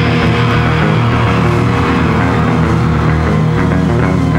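Punk rock band playing live and loud: electric guitar, electric bass and drums together, with sharper, choppier hits coming in near the end.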